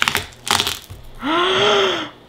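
A knife-scored watermelon cracking and tearing apart as it is pulled open by hand, two short splitting sounds in the first second. Then a woman's long gasp that rises and falls in pitch.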